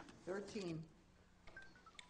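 A faint voice briefly, then a quick run of a few short electronic beeps stepping down in pitch.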